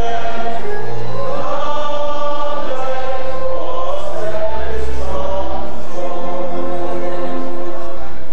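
A choir or standing crowd singing together in slow, long-held notes over a low bass accompaniment.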